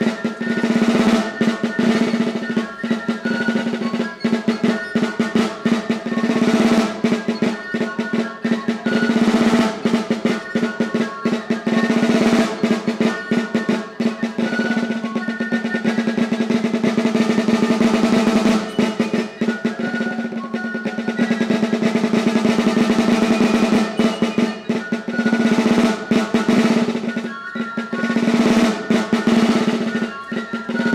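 Basque tabal, a wooden-shelled snare-type drum, played with two wooden sticks in the arin-arin rhythm, a lively duple-time dance beat, with dense strokes that carry on without a break.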